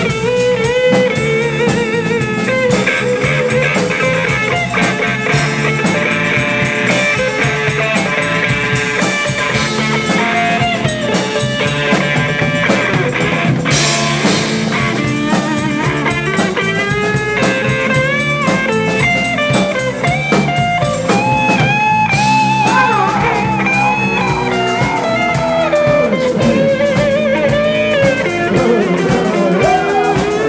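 A live blues-rock band playing an instrumental passage: an electric guitar lead with bent notes over bass guitar and drum kit, with a cymbal crash about halfway through.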